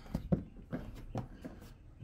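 Plastic liftgate trim panel being pressed up into place, with several light clicks and knocks spread over two seconds as its retainer clips seat.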